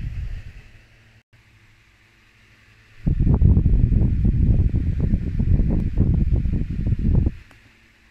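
Loud, irregular low buffeting rumble on the phone's microphone, starting about three seconds in and lasting about four seconds.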